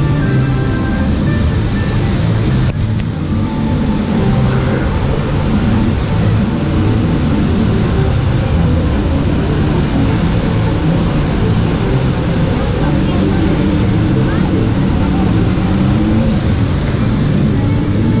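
Background music playing with people's voices talking, over a steady rush of falling water.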